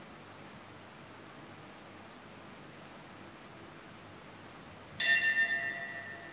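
Faint steady hiss of room tone, then about five seconds in a bell is struck once and rings on, fading away.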